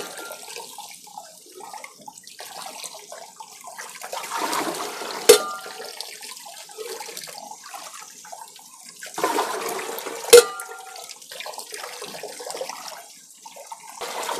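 Water being scooped out of a desert cooler's water tank with a steel bucket: sloshing and splashing that swells twice, each time ending in a sharp knock, about five and ten seconds in.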